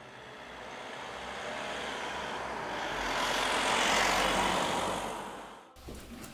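A motor vehicle passing by on the road: a swell of engine and tyre noise that builds to its loudest about four seconds in, then fades and cuts off abruptly near the end.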